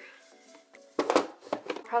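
Soft background music, with a quick cluster of sharp knocks about a second in as things are handled in an open drawer of a chest of drawers with a white plastic basket inside; a woman starts speaking near the end.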